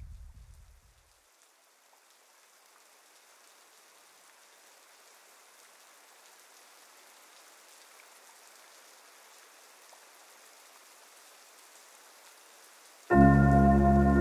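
Electronic music: a low bass drone fades out in the first second, giving way to a faint hiss like rain that slowly swells. Near the end a loud sustained synth chord comes in abruptly.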